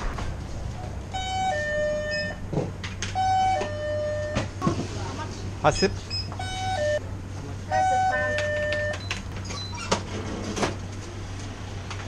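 Electronic two-note door chime of a convenience store, sounding four times. Each time a higher tone steps down to a lower one, ding-dong, over a steady low hum.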